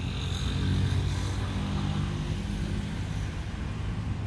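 A motor vehicle's engine running with a steady low hum.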